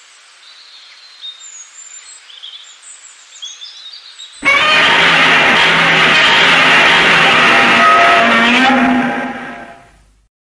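Outdoor ambience with birds chirping. About four seconds in, a much louder, dense sound cuts in suddenly, holds for several seconds and then fades away near the end.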